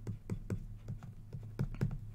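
Light, irregular taps and clicks of a stylus on a drawing screen while handwriting, about five a second, over a steady low hum.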